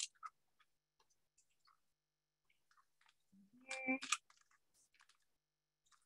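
Faint, soft sticky clicks and squishes of buttercream frosting being worked down inside a plastic piping bag by hand. A short vocal sound comes a little past the middle.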